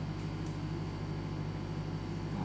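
Room tone: a steady low hum with a faint even hiss, and no other sound.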